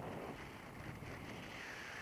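Wind rushing over an action camera's microphone in paragliding flight. The noise rises suddenly at the start, and a higher, slightly falling whistle joins it in the second half.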